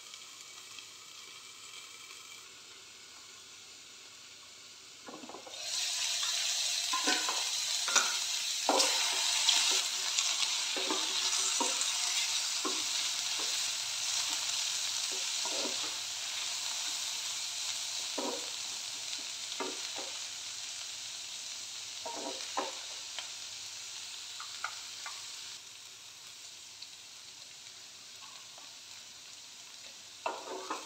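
Mushrooms and onions frying in a steel kadhai. The sizzle is low at first under the lid, then much louder from about five seconds in, with repeated scrapes and knocks of a wooden spatula stirring the pan. The sizzle eases off near the end.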